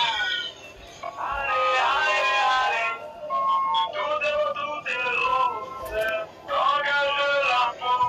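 Music with a singing voice, in phrases of held notes that bend in pitch.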